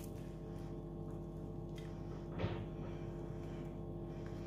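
Quiet background music, with one brief crackle about two and a half seconds in as a flaky, crisp baked puff-pastry pinwheel is pulled apart by hand.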